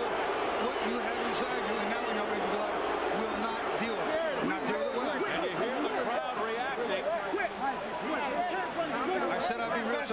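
Boxing arena crowd, many voices shouting over one another: an angry reaction to a fighter who has quit between rounds.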